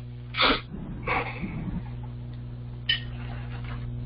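A person sneezing once about half a second in, followed by a second, breathier burst of breath. A single short click comes near the end, over a steady low electrical hum.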